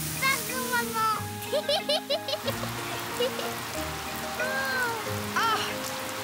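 Water spraying and splashing from a garden hose in a steady hiss. Background music and short vocal squeals play over it.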